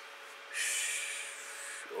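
A woman's long, audible breath, starting about half a second in and lasting just over a second, hissy and fading toward its end, over a faint steady hum.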